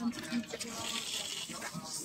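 Faint, indistinct speech of people nearby over a steady hiss.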